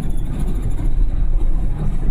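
Steady low rumble of road and engine noise heard inside a car's cabin at highway speed.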